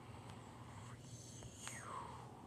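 Faint whispering over a low steady hum.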